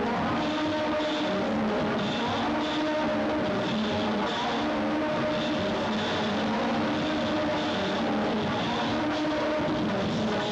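Live experimental electronic music over a club sound system: a dense, steady layer of held tones at several pitches over a noisy bed, with a high tone pulsing on and off.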